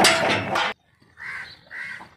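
A loud clattering burst as a bull bucks inside a metal cattle crate, stopping abruptly after under a second. Then a crow caws twice.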